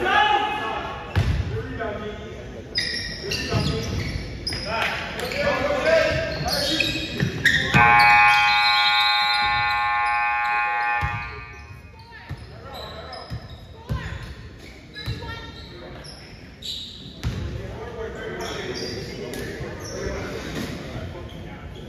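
Gym scoreboard horn sounding one steady blast of about three seconds, starting about eight seconds in: the signal that the game clock has run out. Before and after it, a basketball bounces and voices carry around the large gym.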